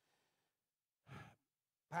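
A pause in a man's talk, nearly quiet, with one short audible breath, like a sigh, about a second in.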